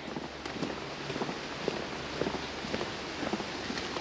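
Steady rush of a river, heard but not yet seen, with footsteps on a tarmac lane about twice a second.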